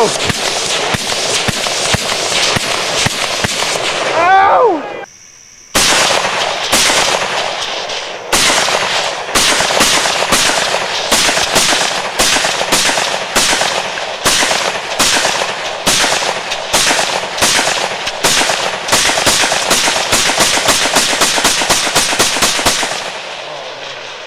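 Rifle gunfire, shot after shot in quick succession. After a short break partway through, a rifle is fired steadily at about two shots a second, stopping about a second before the end.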